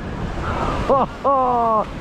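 Waves breaking on a sandy beach, with wind on the microphone. About a second in, a voice breaks in with a short rising exclamation and a drawn-out sound after it.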